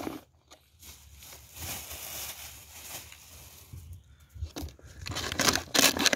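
Thin plastic PET bottle crinkling and kitchen scraps rustling as gloved hands push waste down into it, in irregular spells, louder near the end.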